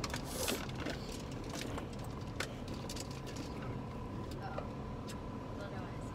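Steady low rumble of a running car heard from inside the cabin, with a few small sharp clicks scattered through it.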